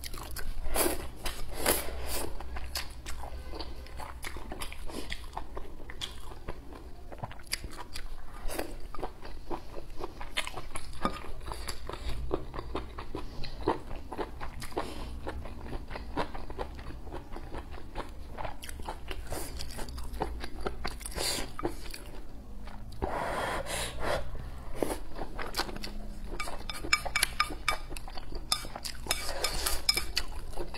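Close-miked chewing and biting of spicy hot pot food and rice: a steady run of crunchy bites and wet mouth sounds, with a fuller stretch of eating about three-quarters of the way in.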